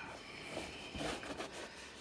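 Faint rubbing and rustling of a damp cloth rag being wiped over and handled around a leather work shoe.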